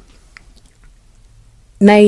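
A pause in a woman's speech: low room tone with a faint mouth click, then her voice resumes near the end with a drawn-out hesitation vowel that falls slightly in pitch.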